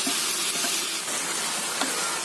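Chicken and chopped vegetables sizzling and hissing in a hot frying pan over a high flame, steam rising as the tomatoes' and cabbage's water boils off, with a few faint taps.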